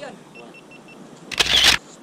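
Camera shutter firing: one loud, sharp burst lasting about half a second, a little past the middle. A few faint short beeps come before it.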